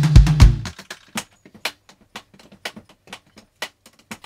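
Drums being played: a few loud, low drum hits in the first second, then a string of quieter, sharp taps at an uneven pace.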